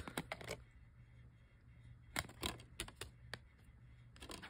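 Faint small plastic clicks of a DVD case's centre hub as a finger presses it to free the disc: a quick cluster at the start, then a few more single clicks about two seconds in.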